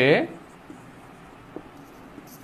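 Marker pen writing on a board: faint strokes with a couple of light taps of the tip, after a man's voice trails off at the start.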